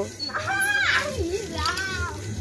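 A child's high-pitched voice calling out twice in short unclear phrases.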